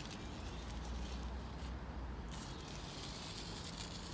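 Stick of chalk scraping along rough concrete as a line is drawn, a soft gritty hiss that is strongest in the second half, over a low steady rumble.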